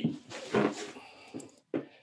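A man's voice in kendo swing practice: the end of a shouted count, 'ni', then a long forceful breathy exhale as the shinai is swung down into the strike, with a brief second burst near the end.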